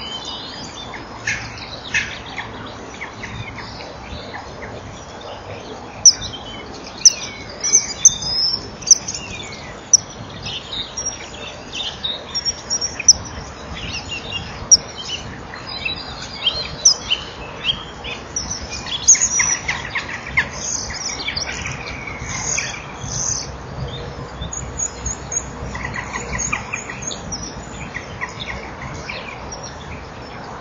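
Birds chirping and calling in many short high notes, busiest in the middle of the stretch. A few sharp clicks stand out from about six to nine seconds in.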